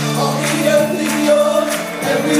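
Gospel choir singing live with band accompaniment: held sung notes over a steady bass, with regular percussion strikes.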